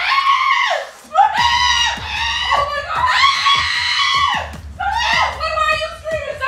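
A woman screaming in disgust and shock after finding a Band-Aid in her food: several long, high-pitched screams with short breaks between them.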